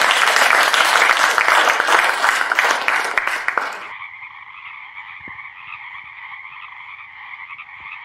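Audience applauding, cut off suddenly about four seconds in. A quieter, steady chirring chorus follows.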